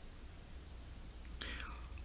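A pause in a man's reading aloud: a faint steady low hum, then a quiet intake of breath about a second and a half in, just before he speaks again.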